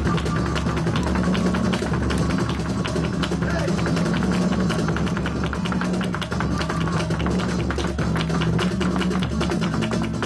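Live flamenco fusion music with a flamenco dancer's heeled shoes striking the stage in rapid zapateado footwork, a dense run of sharp taps over a steady low drone.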